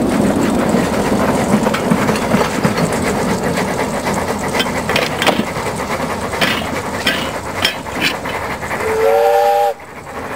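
Narrow-gauge steam train rolling past and away, its wheels clicking over the rail joints as the sound slowly fades. Near the end a steam locomotive gives one short whistle blast, several tones sounding together.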